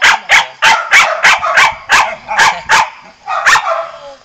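A dog barking rapidly, about three barks a second in a steady run, with a short break and then two more barks near the end.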